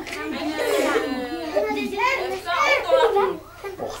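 Several voices talking over one another, children's voices among them, in a small room.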